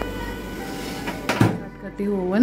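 Microwave-convection oven door pushed shut, latching with a single thunk about one and a half seconds in.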